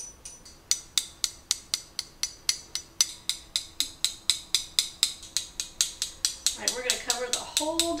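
A spoon tapping the rim of a small metal mesh sieve, about four light, ringing taps a second, sifting cocoa powder over a tiramisu.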